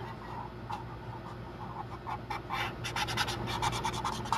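Marker scratching on paper in short colouring strokes. The strokes are scattered at first and become quick and dense about two-thirds of the way in, over a steady low hum.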